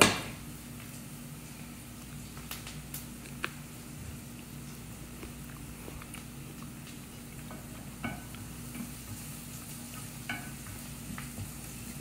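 Onions sizzling gently in hot oil in a pan, with a few light clicks of a utensil against the pan, over a steady low hum.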